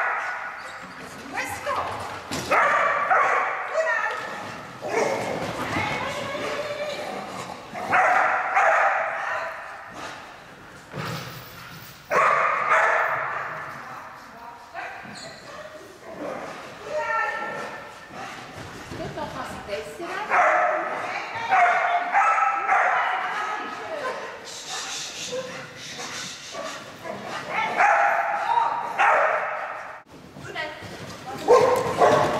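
Dogs barking and yipping, in repeated bursts of a second or two with short gaps between them.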